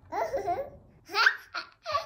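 A toddler laughing. A high-pitched vocal stretch comes first, then about a second in a string of four short laughs.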